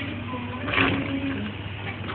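A simple electronic toy tune playing in short, steady notes, with a brief bright burst of noise a little under a second in.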